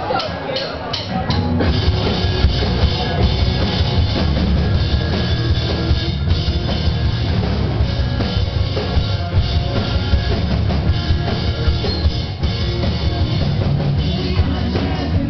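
A rock band playing live and loud, with drum kit, bass and electric guitar. A few sharp hits come in the first second or so, then the full band comes in and keeps playing.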